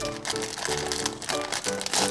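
Clear plastic packet crinkling as it is held and handled in the fingers, over background music with held notes.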